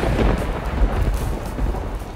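Loud, crackly rustling and handling noise close to the microphone, with faint background music underneath.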